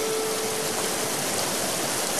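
Steady rush of water pouring through the arched gates of a canal headworks. A held music note fades out within the first second.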